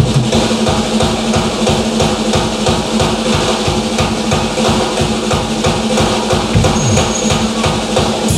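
Live psychobilly band playing, with a fast, even drum beat over a steady low note.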